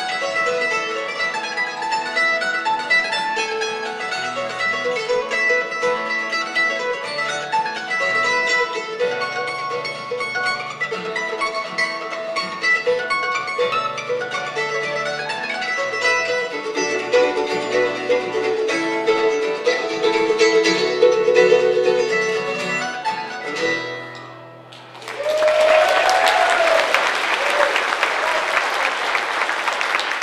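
Mandolin playing a bluegrass tune with acoustic guitar backing; the tune ends about 24 seconds in. After a brief pause the audience applauds, with a few cheers.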